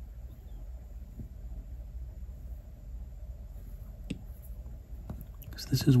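Quiet, steady room hum with a few faint taps of an Apple Pencil on the iPad's glass screen, the sharpest about four seconds in. A man starts speaking near the end.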